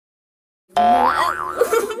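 A cartoon 'boing' sound effect that starts suddenly about three-quarters of a second in, its pitch wobbling up and down.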